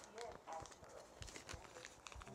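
Faint, indistinct voice with a few light clicks, at a very low level.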